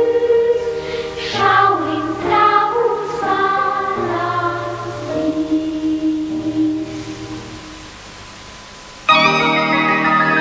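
Children's choir singing over sustained organ-like chords, the phrase dying away to a soft held chord. About nine seconds in, loud keyboard chords start abruptly.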